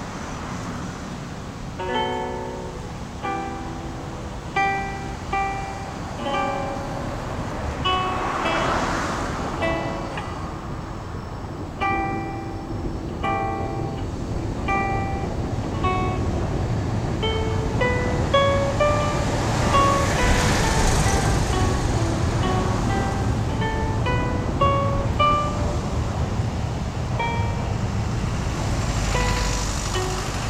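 Solo acoustic guitar playing a sonata as a fingerpicked line of separate, unhurried notes. A low background rumble swells up under the playing about a third of the way in and again through the second half.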